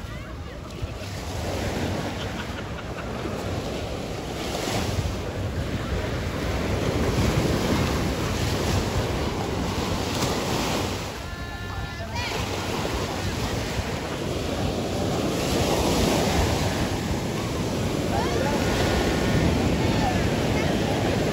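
Small waves breaking and washing up on a sandy beach, the sound swelling and easing every few seconds, with wind rumbling on the microphone.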